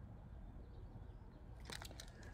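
Mostly quiet room tone with a faint low hum. Near the end come a few short clicks and crinkles from the packaging of a boxed building-block kit being moved by hand.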